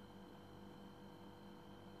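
Near silence in a pause between words: room tone with a faint steady hum.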